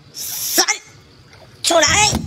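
A short splash as a large fish is heaved out of the water onto the fishing platform, then a man's loud excited shout near the end.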